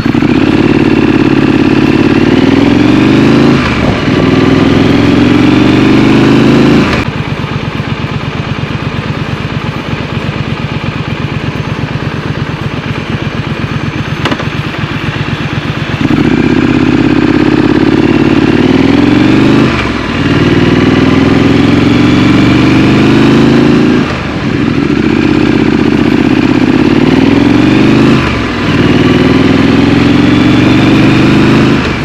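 Triumph Scrambler's parallel-twin engine accelerating hard, its pitch rising and dipping at each upshift a few seconds apart. About a quarter of the way in the throttle closes and the engine runs low and steady for about nine seconds, then it pulls away again through three more upshifts.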